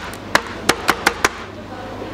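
Swimming crab being struck with a hard tool on a cutting board to soften it for bait: about five sharp knocks in the first second and a half, then they stop.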